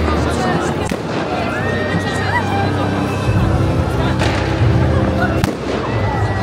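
New Year fireworks going off overhead: several sharp bangs, about one second in, around four seconds in and again near the end, over the noise of a large outdoor crowd and loud music with a bass beat that grows heavier about halfway through.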